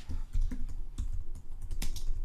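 Typing on a computer keyboard: a quick run of separate, irregularly spaced key clicks as a short name is typed in.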